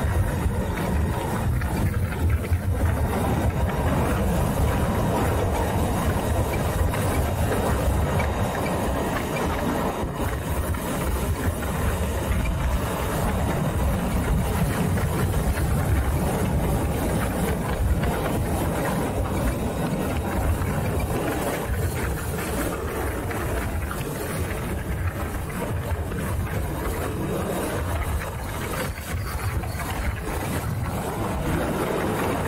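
Steady wind rush over a bike-mounted microphone with a low road rumble, from a Harley-Davidson LiveWire electric motorcycle cruising at about 50. There is no engine note.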